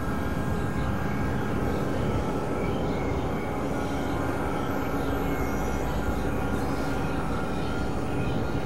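Dense, steady drone-and-noise mix of several music tracks layered and processed together, a thick rumbling wash with a few faint held tones over it and a brief high hiss about seven seconds in.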